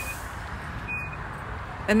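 Infiniti QX80 power liftgate closing under its own power, its warning chime giving a short high beep at the start and another about a second in over a low background hiss.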